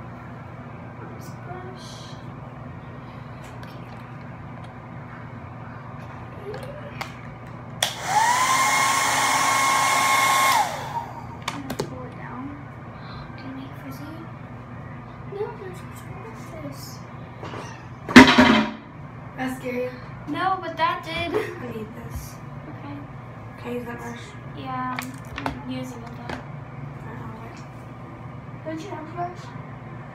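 A hair dryer switched on for about three seconds: a loud rush of air with a motor whine that climbs as it spins up and drops away when it is switched off. About ten seconds later there is one loud knock.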